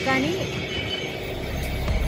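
Outdoor street noise with passing traffic, after a brief voice at the very start. Music fades in near the end.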